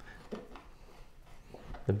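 A knife scraping and tapping faintly on a plastic cutting board as meat is carved off a chicken drumette bone, with a few soft clicks.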